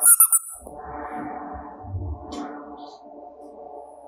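A rubber squeeze toy squeaks sharply several times in quick succession as it is pressed, then a longer, wavering pitched sound carries on for about three seconds.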